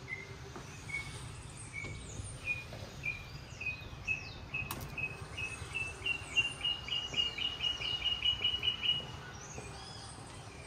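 A bird calling a long series of short whistled notes that start slow, speed up and rise in pitch, growing louder before stopping about nine seconds in, with other birds' higher down-slurred whistles around it. A steady low background rumble runs underneath, and there is one sharp click about halfway.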